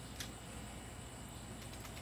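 Faint handling noise as a hand-held plastic battery pack is picked up: a light click shortly after the start and a fainter one near the end, over a steady low background noise.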